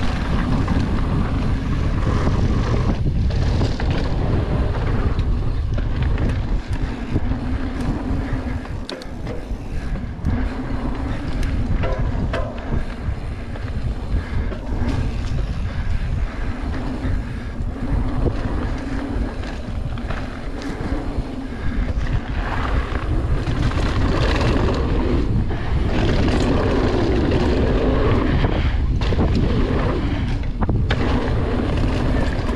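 A mountain bike ridden fast down a dirt singletrack: steady wind rumbling over the camera microphone, with tyre noise on the dirt and frequent short rattles and knocks from the bike over bumps.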